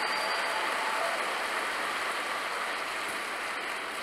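A large audience applauding, a steady patter of clapping that slowly dies away.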